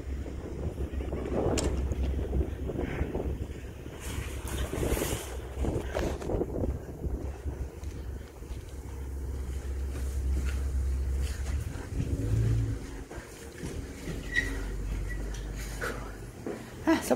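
Wind buffeting a phone microphone outdoors, a gusty low rumble that eases about three quarters of the way through.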